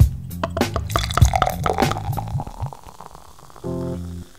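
Outro jingle music: a bass-and-drum groove runs under a quick flurry of clinks and a fizzing, pouring beer sound effect about a second in, then fades out, and a short held chord sounds near the end.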